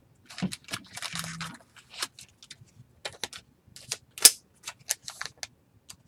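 Foil wrapper of a trading-card pack crinkling and tearing as it is opened, a run of irregular sharp crackles with the loudest about four seconds in.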